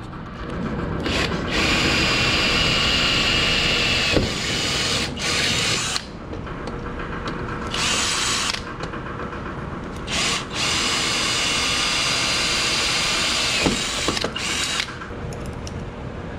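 Cordless drill drilling into the underside of a car's front bumper in several runs. The motor holds a steady whine, and the longest run comes in the middle before it stops and gives one short last burst.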